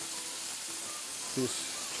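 Lamb chops searing in a hot ridged grill pan, with a steady sizzling hiss from the meat hitting the pan. A brief voice sound comes about a second and a half in.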